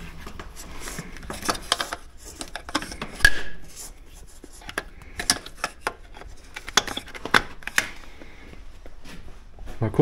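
A power cord and its plug being handled and pushed into a wall socket: rubbing and rustling with a series of sharp clicks and knocks, the sharpest about three seconds in.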